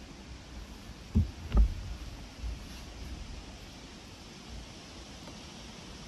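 Wind buffeting the microphone as a low, steady rumble, with two dull thumps close together about a second and a half in and a softer one shortly after.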